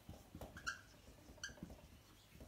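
Whiteboard marker squeaking against the board while writing: two faint, short, high squeaks under a second apart, with light strokes of the pen tip.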